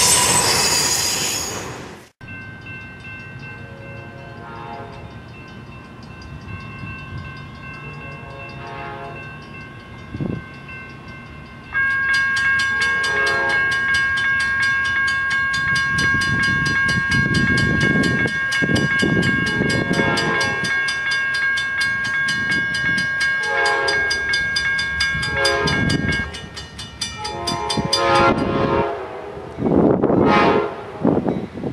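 Amtrak P42DC diesel locomotive approaching a grade crossing, sounding its air horn in a series of blasts that grow louder as it nears, with its engine's low rumble building. From about twelve seconds in, the crossing bell rings rapidly and steadily. The first two seconds hold a loud passing freight train that cuts off abruptly.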